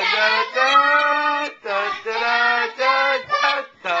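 A child singing a wordless tune on 'da da da', a string of held notes with short breaks between phrases.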